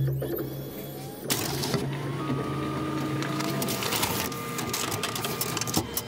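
Office copier running: a steady motor hum with a high whine that starts about two seconds in and stops shortly before the end, over a run of clicks and rattles from the paper-feed mechanism.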